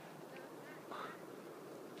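Faint, brief animal calls: a short one about half a second in and a slightly longer one about a second in.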